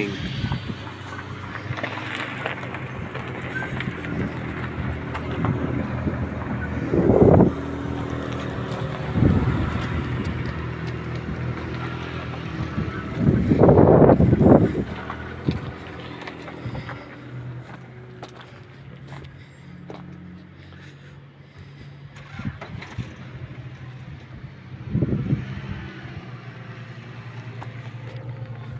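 A vehicle engine running steadily with a low hum, with a few louder rushes of noise breaking over it, the loudest about halfway through.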